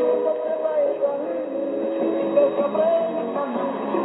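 A song with singing, received as a Brazilian shortwave AM broadcast on 4885 kHz and played through a Sony ICF-SW77 portable receiver's speaker. The sound is narrow and thin, with nothing above about 4 kHz, as is usual for AM shortwave audio.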